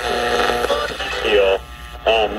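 Broadcast audio from a 5 Core AM/FM/shortwave portable radio's built-in speaker: a snatch of music with held notes, then a short drop in level near the end as the dial is turned between stations. The sound is distorted, which the owner puts down to a defective speaker.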